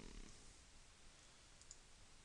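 Near silence: faint room hiss with a few faint computer-mouse clicks about one and a half seconds in.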